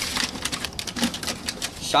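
A sheet of lined notebook paper rustling as it is pulled out of a plastic mailbox and unfolded: a quick run of small, irregular crackles.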